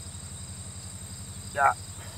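Steady, high-pitched chorus of insects chirring, typical of crickets, over a low steady hum.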